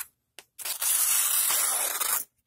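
Y-Start LK5009 folding knife's 440C stainless steel blade slicing through thin lined paper: a steady papery rasp lasting about a second and a half. It starts about half a second in, after a short pause and a small tick.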